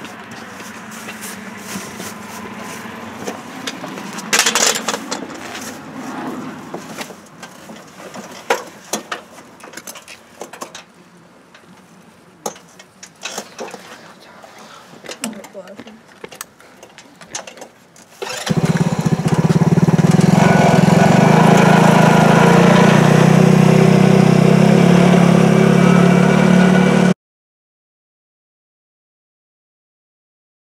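Small petrol engine of an off-road go-kart starting about two-thirds of the way in and running loud and steady, then cut off abruptly near the end. Before it there are scattered clicks and knocks.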